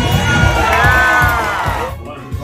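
Audience cheering and whooping over the last bars of upbeat stage music with a steady beat. It all stops abruptly near the end.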